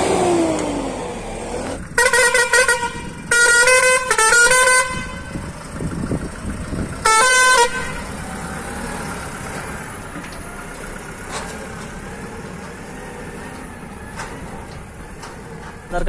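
Truck horn sounded in four short blasts, each a steady pitched tone under a second long, the last a few seconds after the first three. Underneath, the Eicher truck's diesel engine runs steadily, kept going to recharge a battery that had been flat.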